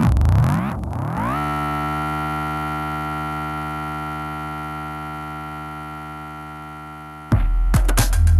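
Electronic samples played live on a Korg Volca Sample: a pitched sound swept rapidly up and down for about the first second, then settling into a held note that slowly fades. Near the end it is cut off by a sudden loud, deep beat with sharp clicks.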